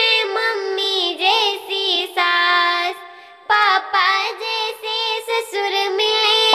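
A Hindi wedding song (vivah geet) with a high, thin, pitch-shifted singing voice in the style of a talking cartoon cat, over music; the voice wavers and bends in pitch, with a brief break about three seconds in.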